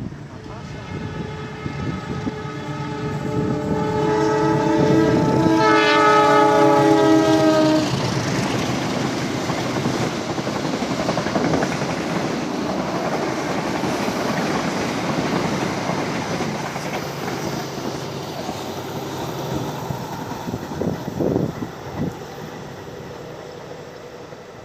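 A diesel-hauled passenger train sounding a long horn blast as it approaches, the horn dropping in pitch about six seconds in, then the rumble and clatter of the carriages running past on the rails, slowly fading as the train draws away.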